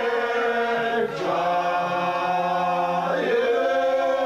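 A group of men singing together unaccompanied in long held notes, the voices moving to a new pitch about a second in and again just past three seconds.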